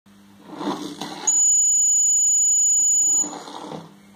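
Piezo buzzer of a homemade laser-tripwire alarm circuit sounding one steady, shrill beep for about two seconds, starting about a second in: the alarm going off because the laser beam on its light sensor has been broken. Fainter noise comes before and after the beep.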